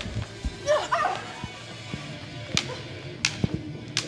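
Prop swords clacking in a staged sword fight: three sharp knocks in the second half, after a short yell about a second in, over background music.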